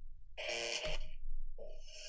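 Sound from a video being played back, quieter than the host's voice: two short pitched passages, the first about half a second in and lasting well under a second, the second starting near the end.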